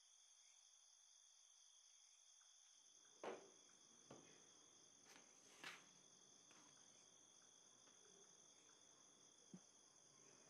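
Near silence: a faint, steady, high-pitched insect drone like crickets. A few soft footsteps come from about three seconds in.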